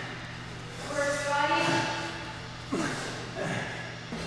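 A person's voice: one drawn-out vocal sound lasting about a second, starting about a second in, then fainter short voice sounds, over a steady low hum.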